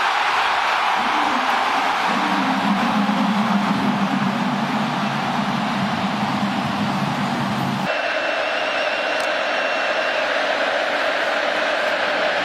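Large stadium crowd cheering a touchdown, a steady roar of many voices, with a lower pitched hum beneath it for several seconds in the middle. About eight seconds in, the sound cuts abruptly to a thinner crowd noise with a faint steady high tone over it.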